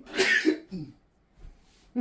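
A man coughing and sneezing into his hand: a sharp burst about a tenth of a second in, a second close behind it, and a weaker one just after, then quiet. The fit is brought on by smoke from the pan on the stove.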